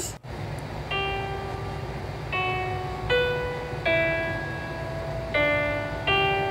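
Single digital piano notes from a TikTok piano filter, played one at a time. Five notes at uneven intervals, each struck and then left to fade.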